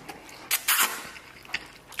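Eating sounds: two short, noisy mouth sounds about half a second in as a mouthful is taken from the bowl, then a small click near the end.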